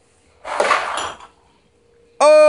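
Metal jar lid weighted with screws sliding across a wooden workbench top in a shuffleboard shot: a short scraping slide of about half a second, starting about half a second in.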